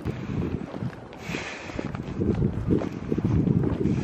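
Wind buffeting the microphone of a handheld camera in uneven gusts.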